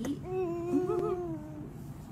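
A voice humming one long, steady note that wavers briefly about a second in.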